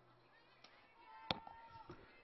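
Quiet ballpark background with one sharp knock a little past the middle, and a faint held tone around it.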